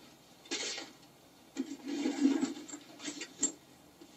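Rummaging through plastic paint cases: a short rustle about half a second in, then a longer stretch of rustling with small knocks and clicks as cases are handled.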